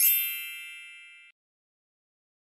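A single bright chime sound effect: one high ringing ding with a shimmering start that fades away and stops about a second and a half in.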